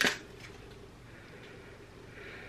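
A brief crackle of a clear plastic wax-melt clamshell being handled at the very start, then quiet room tone.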